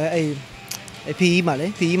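A man speaking Burmese, with a short pause in his talk just before the middle.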